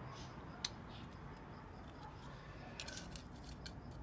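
Faint clicks and light taps from small hand-held objects being handled: one sharp click about half a second in, then a quick cluster near three seconds.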